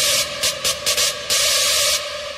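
Electronic dance music: a held synth tone under loud bursts of white-noise hiss that cut in and out sharply, stuttering in a quick run of about four short hits in the middle before swelling back in.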